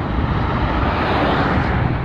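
An oncoming SUV passing close by in the other lane: its tyre and engine noise swells to a peak midway and then fades, over steady wind rumble on the bike-mounted camera's microphone.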